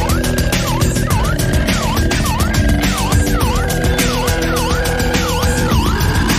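Loud electronic background music with a fast, dense beat and a siren-like synth wail that swoops down and back up about twice a second.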